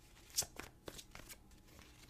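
Tarot deck being shuffled in the hands: a few short, light card clicks, the loudest about half a second in.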